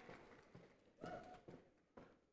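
Near silence, with a few faint taps and a brief faint pitched call about a second in.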